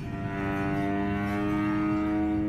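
Experimental improvisation on violin, cello and percussion: a held, steady pitched tone with a second, lower tone joining about half a second in, over a low rumble.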